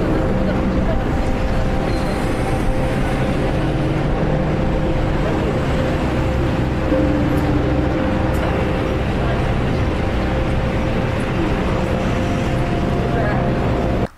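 Steady street noise: vehicles running, with a few held engine-like tones and indistinct voices mixed in.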